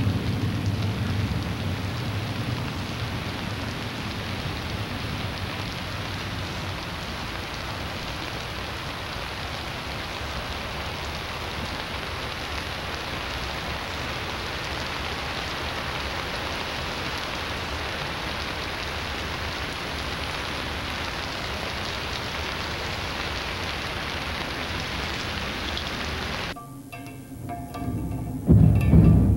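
A steady, even rushing hiss like rain, cutting off suddenly about a second and a half before the end.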